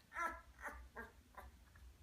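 Newborn English Labrador Retriever puppy, eyes and ears still closed, squeaking in four or five short high cries, the first the loudest. It is the mild stress reaction to being held head-down during early neurological stimulation.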